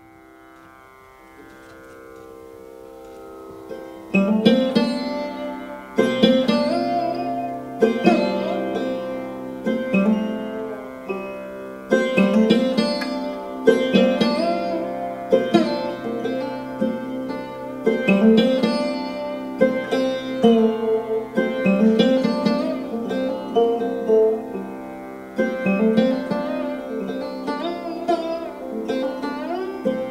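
Sarod-led Indian-fusion string music played live: a soft sustained drone swells in for about four seconds, then loud plucked sarod strokes enter roughly every two seconds over ringing strings.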